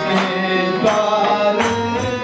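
Devotional chant (kirtan) music: harmonium chords held under a sung melody, with tabla strokes marking a beat about every three-quarters of a second.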